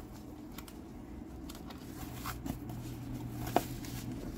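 Plastic graded-card slabs being pulled out of a white foam wrap: soft rustling and a few light clicks, with one sharper click near the end.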